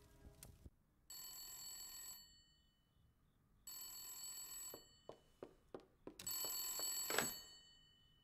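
Old-style telephone bell ringing three times, each ring about a second long with a pause between. A few faint knocks fall between the second and third rings.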